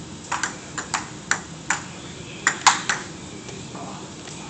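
Table tennis rally: a celluloid-type ping-pong ball clicking off the paddles and the table, about nine sharp hits in quick succession, the loudest a little before three seconds in, after which the rally stops.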